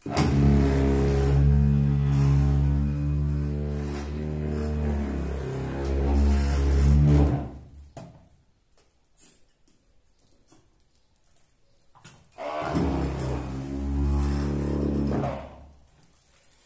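Vibrating tile compactor (martelo vibratório), suction-cupped to a porcelain wall tile, its motor humming steadily to bed the tile into the mortar behind it. It runs twice: about seven seconds, then, after a short pause, about three seconds more.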